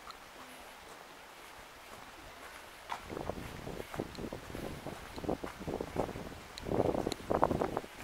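Faint outdoor quiet with soft walking footsteps. From about three seconds in, wind buffets the camera's microphone in irregular low rumbles that grow louder toward the end.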